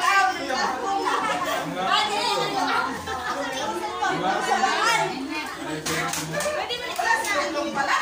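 Several adults and children talking over one another in a room, a continuous mix of chatter with children's voices among it.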